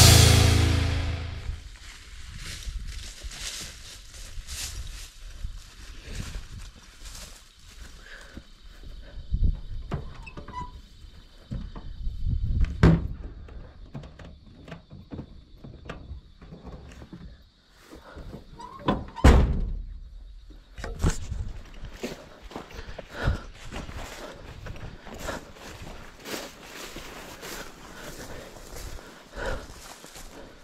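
Irregular thumps, knocks and rustles of a hand-held camera being carried, with footsteps through dry grass; the heaviest thumps come about 9, 13 and 19 seconds in. Rock music cuts off in the first second or two, and a steady high buzz runs through the middle.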